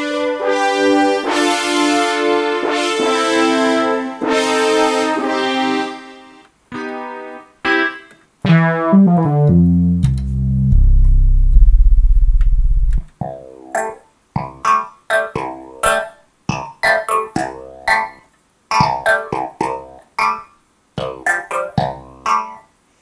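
Roland JD-800 digital synthesizer playing several of its sounds in turn. First come sustained chords for about six seconds, then a falling run ends in a deep bass note. From about the middle onward there are short, choppy clavinet-style notes with gaps between them, a "nice clav".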